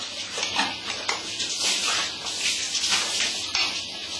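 A steady high-pitched hiss, with faint fragments of voices and a few small clicks.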